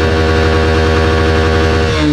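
Honda Livo motorcycle's single-cylinder engine idling steadily, close to the microphone.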